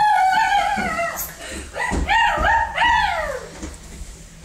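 A child's high-pitched wavering cries: a held squeal that ends about a second in, then two shorter cries that rise and fall.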